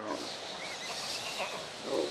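Sound effect of the caravan's pack animals, camels and horses, calling. It is a continuous rough, noisy sound that grows louder just before the end.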